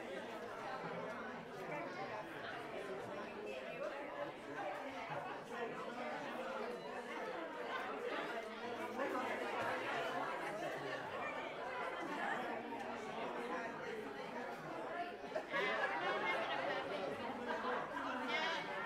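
Many voices chatting at once in a large hall, no single voice clear: a congregation talking among themselves before a service, with one voice coming up louder near the end.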